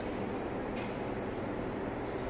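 Steady machine hum of a sandwich panel production line running, its conveyor section and drives giving an even noise with a faint steady tone.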